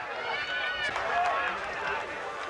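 Open-air football match ambience: faint voices calling out from the pitch and stands over a steady background noise.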